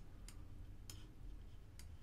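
Computer mouse clicking faintly a few times, scattered ticks, over a low steady hum.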